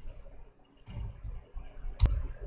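Quiet pause: low room hum with a faint swell about a second in, ending in a sharp click.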